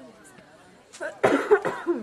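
A person close to the microphone coughs several times in quick succession, starting just past a second in, over faint crowd chatter.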